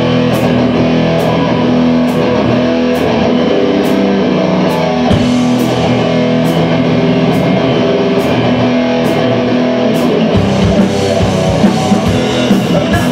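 Live heavy metal band playing an instrumental passage: electric guitars, bass guitar and drum kit, with a cymbal struck at an even pace a little under once a second. Heavier drum hits come in near the end.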